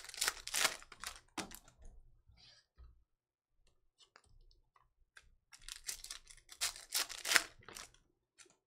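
Foil trading-card pack wrappers crinkling and tearing open in two spells a few seconds apart, with a few small clicks and rustles between them as the packs and cards are handled.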